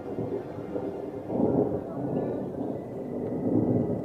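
Distant thunder from an approaching storm: a low rolling rumble that swells about a second and a half in.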